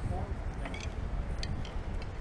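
Faint, distant voices of people talking over a low outdoor rumble, with a few light clicks.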